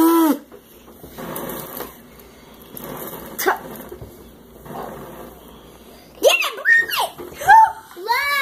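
Children blowing hard at birthday candles on cupcakes in several breathy puffs, the candles refusing to go out. A laugh and gasp come at the start, and a child's voice and laughter near the end.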